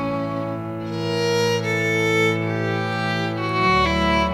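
Background music: a slow melody of long, held bowed-string notes, likely violin, changing pitch every second or so.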